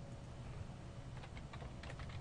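Computer keyboard typing: a short run of faint keystrokes beginning a little over a second in, over a low steady hum.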